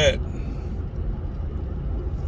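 Steady low rumble of a car heard from inside its cabin, the engine and road noise running on without change.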